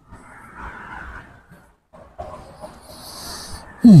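A man breathing audibly close to a clip-on microphone, two long breaths, then a short voiced 'hmm' at the very end.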